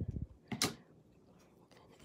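Scissors snipping once through a narrow gingham ribbon, a single short sharp snip about half a second in, after a little handling noise.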